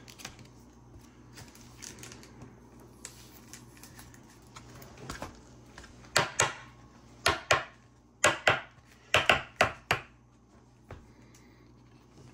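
Trading cards being handled: faint scuffing, then about ten sharp clicks and slaps in quick pairs in the second half.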